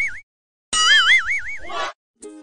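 Cartoon 'boing' sound effect: a wobbling, springy tone, heard twice with a brief silence between.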